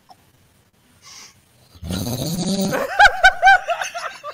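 A man's laughter, starting loudly about two seconds in after a quiet stretch and turning into a run of high-pitched, quickly repeated squeals.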